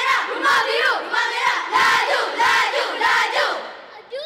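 A group of children chanting loudly in unison, shouted syllables in a steady rhythm of about one every two-thirds of a second, fading out near the end.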